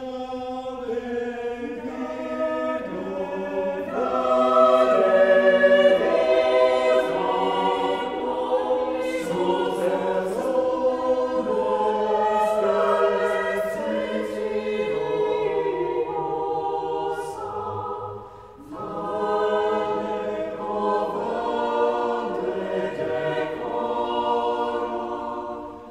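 Church choir singing sustained chords in several parts, swelling a few seconds in. A brief break about three-quarters of the way through before the next phrase begins.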